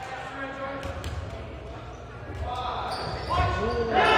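Dodgeballs bouncing and thudding on a hardwood gym floor under players' and spectators' overlapping voices, all echoing in a large gymnasium. The shouting grows louder near the end.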